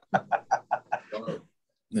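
Laughter: a quick run of short ha's, about eight of them, that fades out after about a second and a half.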